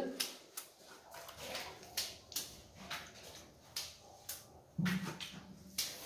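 A stiff brush dabbing and scrubbing water onto the cut edge of a fresh cement screed: a dozen or so short wet strokes, about two a second, wetting the joint so the next screed pour will bond to it.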